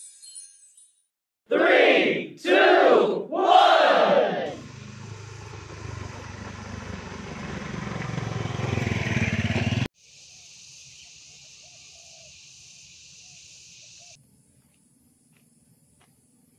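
Three loud shouted calls in quick succession, followed by a swelling noise that rises and cuts off abruptly, then a few seconds of steady high hiss.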